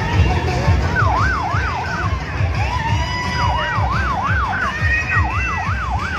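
Warbling siren tone sweeping rapidly up and down, about three to four sweeps a second, in three short bursts, over a loud, bass-heavy pulsing background.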